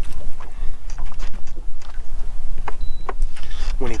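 Steady low rumble of wind buffeting the microphone on an open boat deck, with a few small clicks and knocks during fish handling.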